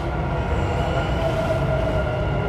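Dubai Metro train running on its track, heard from inside the carriage: a steady rumble with a faint thin whine over it.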